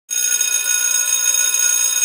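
Electric bell ringing loudly and continuously, its clapper striking rapidly; it starts suddenly at the very beginning.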